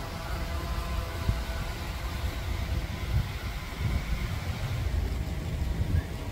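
Wind buffeting the microphone outdoors, an irregular low rumble, with a faint steady hum in the background that fades out over the first few seconds.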